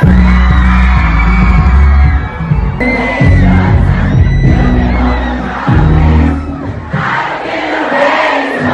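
Loud live pop concert music with a heavy bass beat, mixed with the noise of a large arena crowd of fans.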